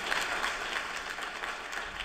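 Audience applauding, a steady patter of many hands clapping.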